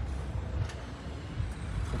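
Steady low outdoor background rumble, like distant road traffic, with no distinct event standing out.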